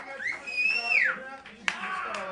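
A person whistling one high note that rises, holds for about half a second and slides back down, followed by a sharp click near the end.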